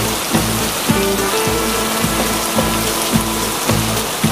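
Steady hiss of heavy rain, starting abruptly, laid over a children's backing track with a steady beat.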